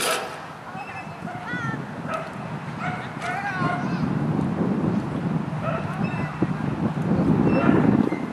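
A dog barking and yipping in short, scattered calls, with voices in the background. A low rushing noise builds through the second half and is the loudest sound by the end.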